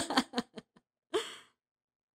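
A woman's laugh trailing off in a few short, fading breathy pulses, followed a little over a second in by a brief sigh.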